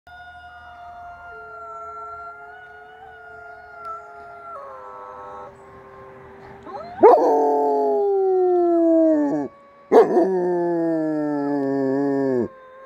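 Canine howling: first a faint chorus of wolf howls, long notes held at several pitches at once. About seven seconds in, two much louder, long howls follow, each starting sharply and sliding down in pitch over two to three seconds.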